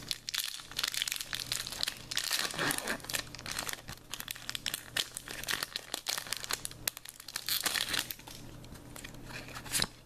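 Foil wrapper of a Pokémon trading card booster pack crinkling and tearing as the pack is opened, with the cards being handled. The crackling comes in two busy stretches and stops suddenly near the end.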